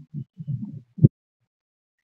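Four short, soft, low thumps in about the first second, then dead silence where the recording is cut.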